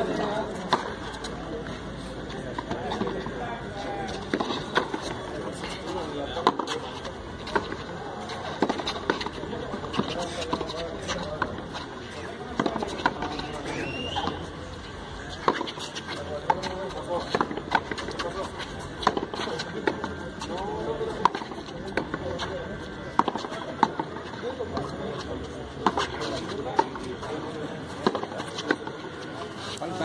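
A frontón ball smacking off the concrete front wall and floor and being struck by the players during a rally: sharp, loud smacks every second or two. Indistinct voices murmur underneath.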